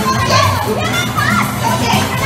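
A crowd of excited children shouting and talking over one another, with background music playing.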